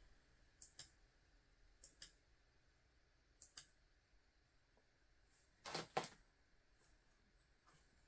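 The push-button on the LED light strip's controller clicking in press-and-release pairs, four times over, each press switching the strip's flash pattern; the last pair is the loudest. Otherwise near silence.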